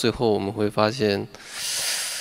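A man speaks briefly, then a steady rubbing hiss begins just past the middle and runs for about a second.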